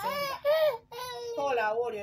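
A woman's voice in a wailing, crying-like tone, its pitch rising and falling in long arcs for about the first second, then running on into speech.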